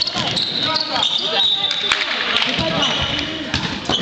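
Indoor basketball game: the ball bouncing on the hall floor, sneakers squeaking and players' feet running on the court, with voices calling out in the echoing gym.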